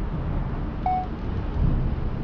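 Steady, uneven low rumble of wind buffeting the microphone, with one short high beep about a second in.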